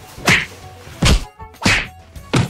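Three sharp slaps in quick succession.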